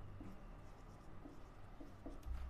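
Marker pen writing on a whiteboard: a run of short, faint strokes as a line of text is written out.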